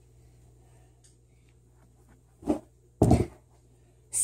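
Two thuds on a carpeted floor about half a second apart, the second louder and longer: a person's feet and body landing from a gainer backflip and falling, a failed landing.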